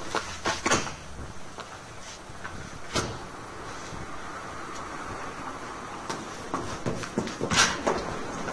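Door being handled: a few sharp knocks and clicks, the loudest near the end.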